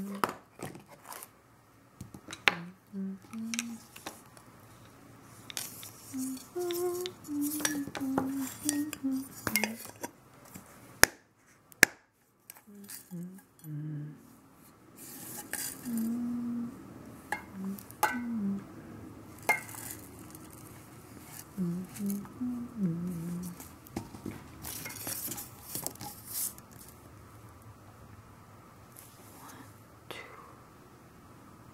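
Metal tea tins and a stainless steel teapot being handled: repeated clinks, taps and scrapes of metal, with two sharp clicks a little before the middle. Soft, low humming in short notes runs through much of it.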